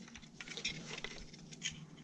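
Faint, scattered small clicks and rustles of hands handling hoses and plastic connectors in a car's engine bay.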